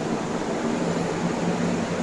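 Steady mechanical hum with an even, fan-like rush of air and a low drone underneath.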